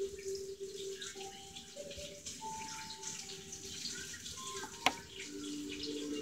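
A faint tune of clear single notes, each held about half a second, stepping up and down in pitch over a low steady hum, with one sharp click about five seconds in.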